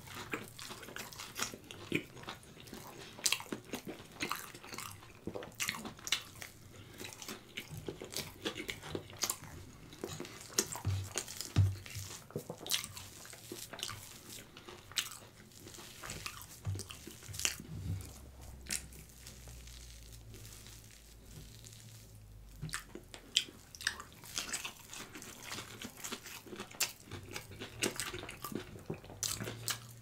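Close-miked eating: crisp fried hash brown patties crunching between the teeth, with many sharp crackles, and wet chewing of the cheese-topped bites.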